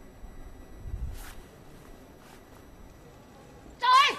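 Weightlifting hall with a few faint knocks and clicks while the lifter sets up at the barbell. Near the end a sudden loud, high shout rings out as she pulls the 100 kg bar into the clean.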